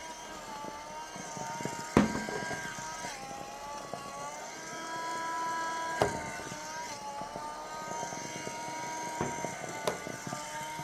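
Cordless handheld window vacuum running as its squeegee is drawn over a blackboard, a steady high motor whine whose pitch dips slightly now and then as the load changes. Two sharp knocks, about two seconds in and about six seconds in, as the tool touches the board.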